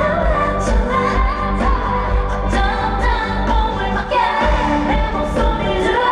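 Live K-pop performance: a woman singing into a handheld microphone over a pop backing track with a steady beat.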